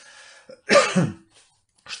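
A man coughs once, a short loud cough about half a second in.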